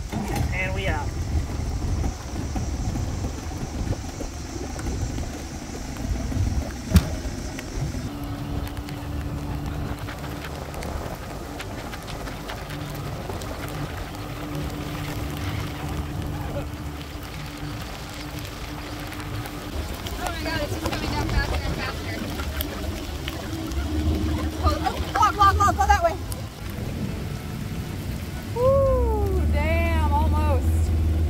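Outboard motor running on a small aluminium boat under way on a river, with wind buffeting the microphone and rain falling. Short wordless voice calls come in near the end.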